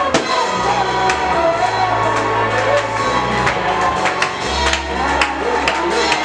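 Live Congolese praise music: a young singer's voice over a drum kit, with regular cymbal and drum strikes and a sustained bass line underneath.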